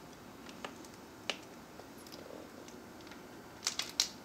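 A few scattered light clicks over quiet room tone, the sharpest just over a second in and a quick cluster of them near the end.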